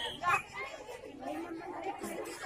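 Crowd of spectators chattering, with one short loud shout about a third of a second in.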